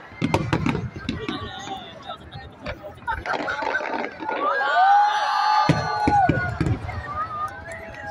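Aerial fireworks going off in a series of sharp bangs and crackles over a crowd's chatter and exclamations, the bangs thickest in the first second. Midway a voice in the crowd lets out one long drawn-out cry that rises at the start and falls away at the end.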